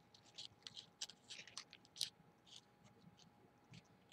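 Faint, scattered rustles and crinkles of paper being folded and creased by hand, the loudest about halfway through, over a faint steady hum.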